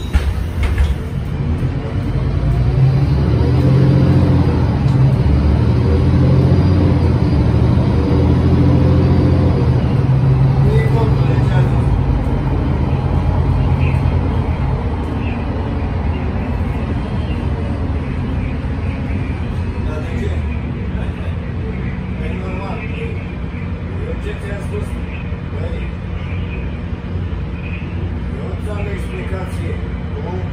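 Otokar Kent C18 articulated city bus heard from inside the rear of the cabin, its engine pulling hard under acceleration with a deep, loud drone and pitch rising and falling through the gears. After about 14 seconds it eases to a steadier, slightly quieter cruise.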